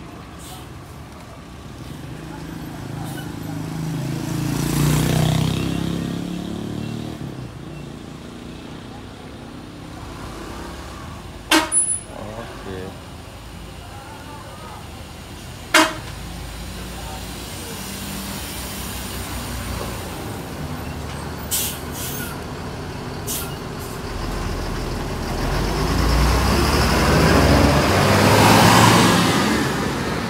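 A large intercity coach's diesel engine rumbles slowly by close at hand, its deep sound building to loudest near the end as it passes. Earlier a smaller vehicle swells past, and two short sharp blasts come about a third and about halfway in.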